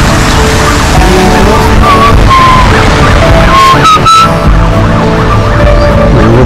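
Background music with short gliding melody lines over a dense steady backing.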